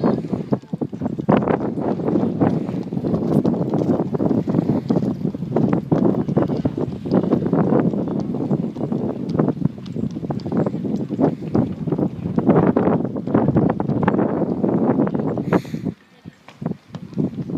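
Wind buffeting the camera microphone: a loud, continuous rumble that flutters and gusts unevenly.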